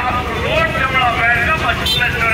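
People's voices talking close by over a steady low rumble, with one short click near the end.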